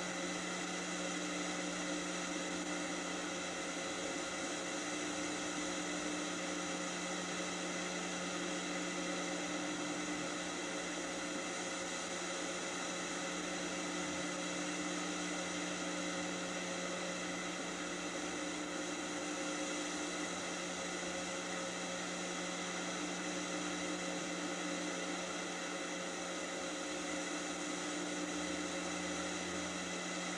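Steady hiss with a faint electrical hum and buzz, unchanging throughout: the background noise of a VHS tape playing over a silent stretch of its soundtrack.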